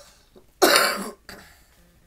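A man coughing once, loudly, about half a second in.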